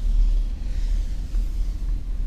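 A steady low rumble with a faint hiss above it, and no distinct event.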